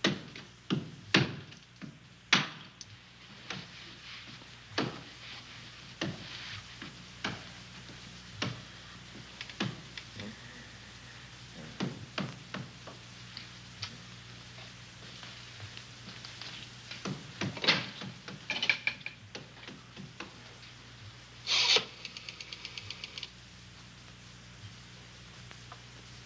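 Hammer blows knocking into a wall, sharp and irregular, roughly one a second with short pauses, over a faint steady hum. Near the end comes a louder scraping blow, then a quick run of small, even clicks.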